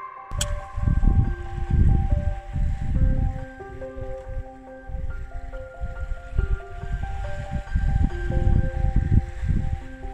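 Wind buffeting the microphone in uneven gusts, under slow, gentle instrumental music of held single notes that step from one pitch to the next.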